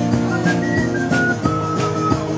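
A man whistling a melody into a microphone, clear single high notes stepping from pitch to pitch, over a live guitar-band accompaniment with a steady beat.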